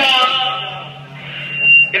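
A steady low electronic hum runs through the band's amplification. About one and a half seconds in, a brief piercing high steady tone, like a buzzer, rises to the loudest point and then stops.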